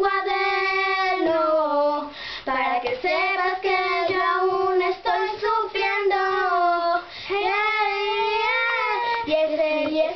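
Young girls singing a melody with no clear words, in long held notes that glide up and down.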